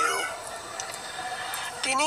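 A rooster crowing in the background, a falling call right at the start that trails off into faint background noise.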